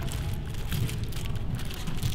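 Paper sandwich wrapper of a McChicken crinkling in the hands as it is unwrapped, a quick irregular run of small crackles.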